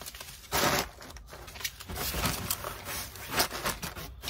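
Bubble wrap crinkling and rustling against cardboard as bubble-wrapped items are handled and packed into a cardboard box, with a louder rustle about half a second in.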